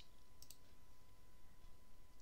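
A couple of faint computer mouse clicks about half a second in, over quiet room tone with a faint steady hum.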